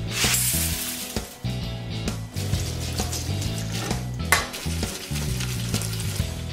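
Macaroni and cheese being stirred in a stovetop pot, with a burst of hiss in the first second and a sharp clink about four seconds in, over background music with a steady bass line.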